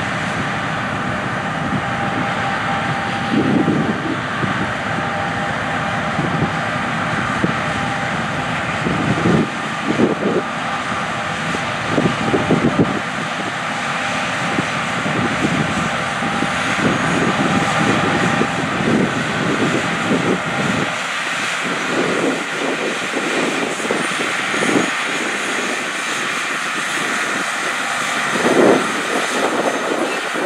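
Combine harvesters running while harvesting wheat: a steady engine-and-machinery roar with several short louder surges.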